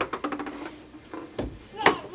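Light taps and clicks as a toddler swings a plastic racket at a tee-ball on a wooden deck, with a dull thump past the middle and a sharp click near the end.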